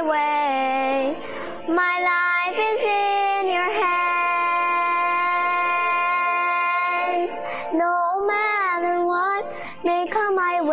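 A young girl singing a gospel song solo, with a long held note from about four to seven seconds in.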